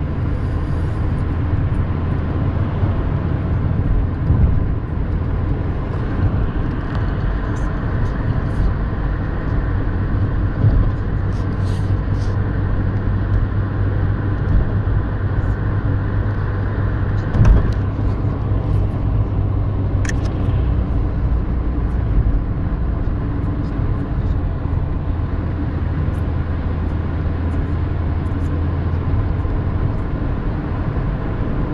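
Steady road and engine noise heard inside the cabin of a car travelling at motorway speed, with a constant low hum. A single short knock sounds a little past halfway through.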